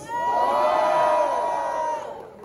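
Crowd cheering and whooping with long held yells, answering a call to make noise for one of the rappers. The noise fades near the end.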